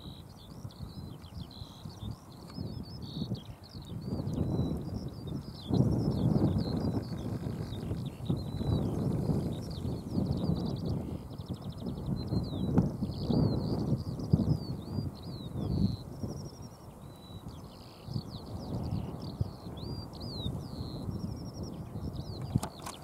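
Birdsong outdoors: a continuous high twittering of quick chirps and slurred notes, with gusts of wind rumbling on the microphone that are louder at times.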